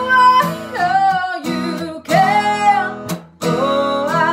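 A woman singing, accompanying herself on a strummed acoustic guitar, with long held sung notes. The music breaks off briefly just after three seconds in, then resumes.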